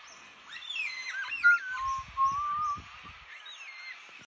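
Songbirds singing: a run of clear whistled notes gliding up and down starts about half a second in and settles into a held note, while short high chirps repeat throughout. A few low thumps come in the middle.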